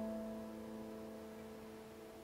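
A piano chord ringing on and slowly dying away, with no new notes, in a pause of a slow ballad.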